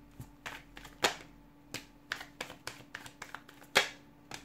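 A deck of tarot cards being shuffled by hand: a string of sharp, irregular card snaps and slaps, the loudest about a second in and near the end.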